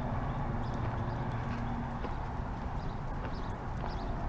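Footsteps crunching on a gravel road in a steady walking rhythm.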